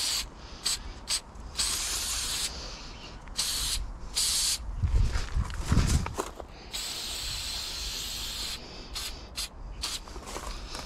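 Aerosol spray paint can hissing in a run of short bursts and longer sprays, the longest lasting nearly two seconds near the end. A low rumble comes about five to six seconds in.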